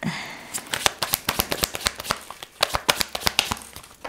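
A deck of tarot cards being shuffled by hand: a quick, irregular run of crisp card flicks and clicks.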